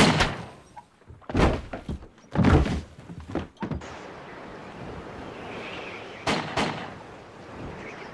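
A few loud bangs from pistols fired inside a small boat cabin. Then a steady rush of wind and choppy water over open sea, broken by two sharp knocks about two-thirds of the way through.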